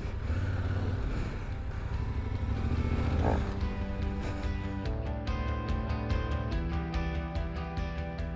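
Yamaha Ténéré 700's parallel-twin engine running at low speed as the bike crawls over loose rocks. About five seconds in, music with a steady beat comes in over it.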